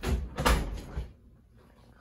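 A wooden entrance door being pulled shut: two knocks about half a second apart as it closes and latches.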